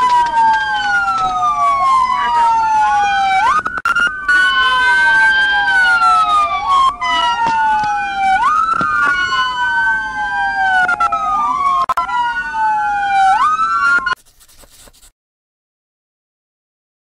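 Police car sirens wailing, two of them overlapping out of step, each sweeping slowly down in pitch and quickly back up every few seconds. They cut off abruptly near the end.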